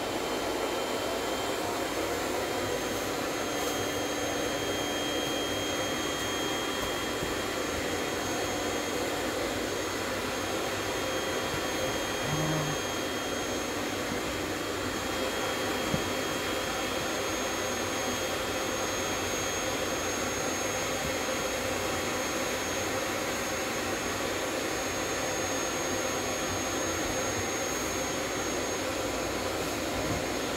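Vacuum cleaner running steadily with a faint high whine, drawing the air out of a plastic bag so that it squeezes a foam cushion flat. There is one brief click about halfway through.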